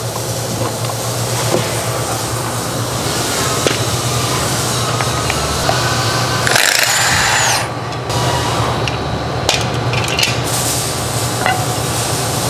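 Work on the car's brake and hub parts: tools knocking and clanking on metal over a steady low shop hum, with a louder burst of noise lasting about a second midway.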